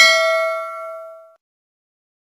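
Subscribe-button bell sound effect: a bright notification ding of several ringing tones that dies away about a second and a half in.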